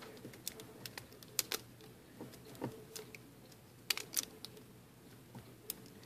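Faint, irregular clicks and light rubbing as hands double a rubber band over a small metal universal swivel (socket U-joint), wrapping it to stiffen the loose, floppy joint. A few sharper clicks stand out among the handling noise.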